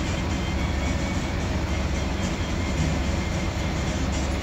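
Steady low engine rumble of a city bus heard from inside its cabin, with music playing over it.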